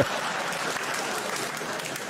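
A large theatre audience applauding after a stand-up punchline, a steady wash of clapping that eases slightly toward the end.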